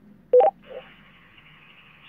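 Fire-brigade two-way radio channel opening: over a faint hum, a short, loud two-note beep, a lower tone stepping up to a higher one, sounds about a third of a second in. It is the signalling beep at the start of a transmission, and the steady hiss of the open channel follows it.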